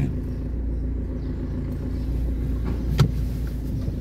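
Steady low rumble of a car's engine and road noise heard from inside the cabin while driving, with one sharp click about three seconds in.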